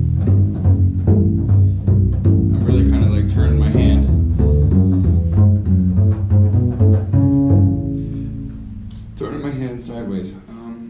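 Upright double bass played pizzicato: a quick run of plucked notes on the lower strings, struck with the side of the right-hand finger for more punch. About seven and a half seconds in, a last note rings on and fades.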